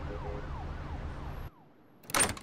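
Faint emergency-vehicle siren in quick falling sweeps, about four a second, over a low city rumble; it all cuts off suddenly about a second and a half in.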